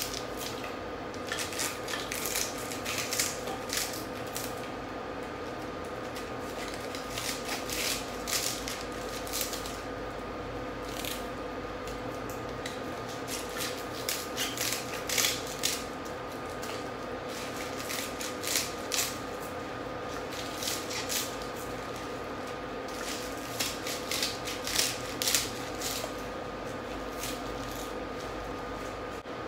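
Kitchen scissors snipping cabbage leaves, a string of short, irregular cuts, over a steady faint hum.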